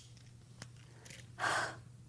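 A woman sighs once, a short breathy burst a little past the middle, over a faint steady low hum.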